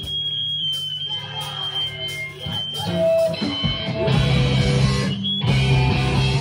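Screamo band playing live on electric guitars, bass and drums. The first few seconds are a sparser passage over a held bass note with a high steady tone above it, and the full band comes back in about four seconds in.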